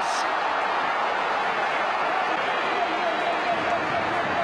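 Football stadium crowd cheering just after a goal: a steady, dense noise of many voices, with a few single voices faintly standing out.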